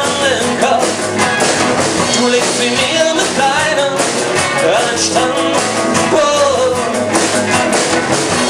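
A band playing live: drum kit, bass guitar, electric guitar and acoustic guitar together at a steady loud level, with a melodic line that bends and glides in pitch over the mix.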